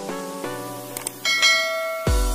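Light background music with a short click about a second in, followed by a bright bell ding that keeps ringing: subscribe-and-notification-bell sound effects.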